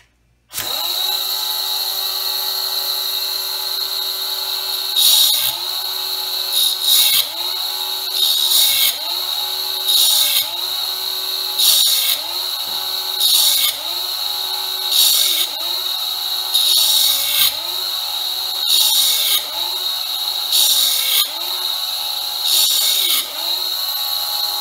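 An air-powered die grinder with a 3-inch cutoff wheel, clamped in a vise and set to low speed, starts up about half a second in and runs steadily. From about five seconds in, a cast iron piston ring is pressed against the spinning wheel more than a dozen times, every second and a half or so. Each pass gives a grinding rasp and a brief dip in the grinder's pitch under the load, as the ring's end gap is ground open toward 0.030 in.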